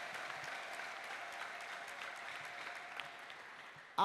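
Congregation applauding: steady clapping of many hands that slowly fades toward the end.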